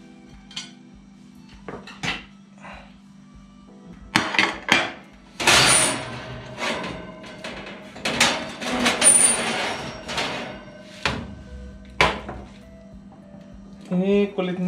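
Metal oven tray clattering and scraping against the oven rack and open door, with aluminium foil crinkling and a metal fork clinking on a ceramic plate as baked chicken is taken out and served. The knocks and scrapes come irregularly, the busiest stretches in the middle, over a faint steady hum.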